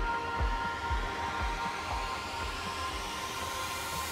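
Progressive house build-up: the kick drum, about two beats a second, fades out over the first two seconds while a white-noise riser sweeps steadily upward in pitch and grows louder over a held synth tone.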